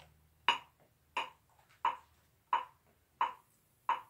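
Metronome clicking at 88 beats per minute: about six short, evenly spaced clicks.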